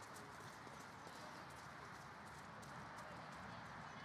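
Faint footfalls of runners on grass passing close by, soft irregular steps over a steady outdoor hiss.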